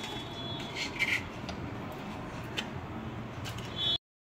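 A metal spoon scraping and clicking a few times against a ceramic plate as jam is spread on a puri, over steady low background noise.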